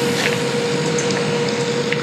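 Steady room noise, an even hiss with a faint steady hum, and a couple of small clicks near the end.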